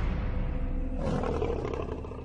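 A lion's deep, rough growl that fades toward the end, with documentary music underneath.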